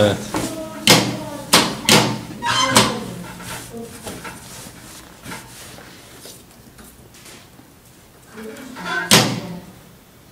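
A few sharp knocks and clatters in the first three seconds, with fabric rustling, as a heavy satin dress is moved about and set under the needle on a sewing machine table; then quieter handling, and one more short burst of noise after about nine seconds.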